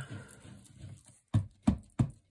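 Ink pad being tapped onto a textured plate to ink it: a faint rustle, then from about a second and a half in, sharp dabbing taps, about three a second.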